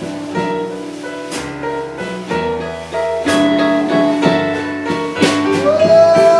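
Live blues band playing an instrumental passage: keyboard chords and electric guitar over a drum kit, with regular drum and cymbal hits. Near the end a note slides up and holds.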